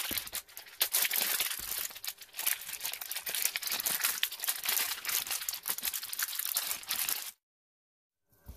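Plastic shrink wrap crinkling and tearing as it is peeled off toy capsule balls by hand: a dense, continuous run of crackles that cuts off suddenly near the end.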